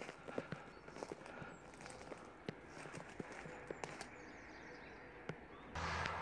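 Twigs and branches cracking and rustling as a person pushes and crawls through a dense hedge: a scatter of faint, sharp snaps over soft rustle. A low steady rumble comes in near the end.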